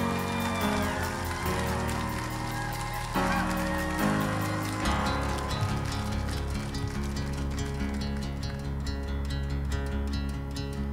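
Live band playing the instrumental intro of a country-rock song, with acoustic guitar chords held over the band. Deep bass notes come in about halfway, and a steady ticking rhythm grows clearer near the end.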